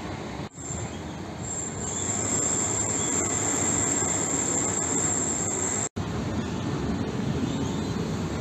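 Railway-station noise: a steady rumble with a high-pitched squeal that comes in about a second in, holds steady, and stops abruptly with a cut about six seconds in.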